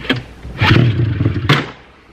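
Recoil pull-start of a 1999 Ski-Doo MXZ 600's two-stroke twin on half choke. The engine fires for about a second and dies with a sharp crack without catching: the long-sitting engine, newly given spark by a swapped voltage regulator, is trying to start.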